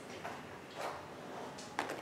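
Quiet handling of cardboard packaging boxes held in the hands: a soft rustle about a second in and a light click near the end.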